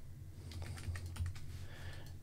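Computer keyboard typing: a run of light, scattered keystrokes.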